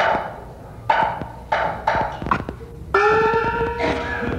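Chinese opera percussion: about five gong and cymbal strikes in the first two and a half seconds, each ringing out and fading, with a light clapper click among them. Near the end a steady held pitched note begins.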